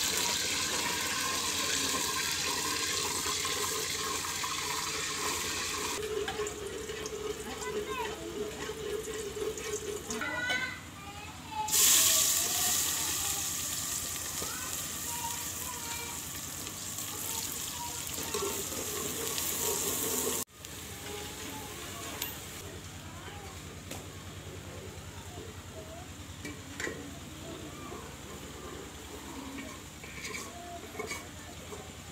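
Oil and food sizzling in an aluminium pot over a wood fire, a steady high hiss. About twelve seconds in, a sudden loud burst of sizzling starts and slowly dies down. It cuts off two-thirds of the way through, leaving a quieter background.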